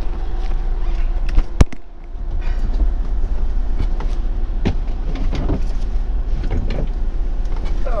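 Motorhome engine idling with a steady low rumble while stopped, with a single sharp click about one and a half seconds in and smaller clicks and rustles after it.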